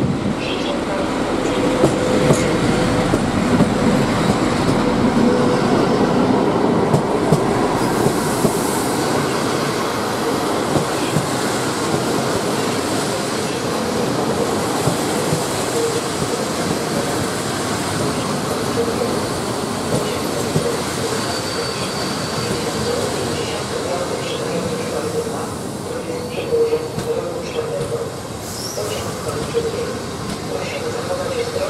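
Polregio passenger train hauled by an EP07P electric locomotive rolling past along the platform: steady rumble of wheels on rail with a thin squealing tone from the wheels and scattered clicks over the rail joints as the coaches go by.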